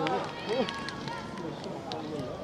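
Several voices of spectators and players talking and calling out at once across a football pitch, with a few short sharp clicks near the start, about half a second in and near the end.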